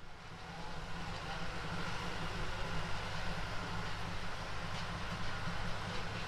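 A steady low rumble under an even hiss, fading in over the first second and then holding.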